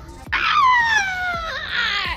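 A young boy's long, high-pitched squeal that slides down in pitch, then a shorter wavering one near the end, as he playfully resists his mother's hug.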